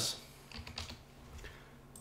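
Typing on a computer keyboard: a few soft, separate keystrokes.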